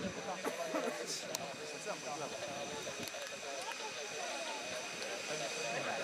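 Steady high whine of an L-39 Albatros jet trainer's Ivchenko AI-25TL turbofan as the jet passes low along the runway, heard under people talking nearby.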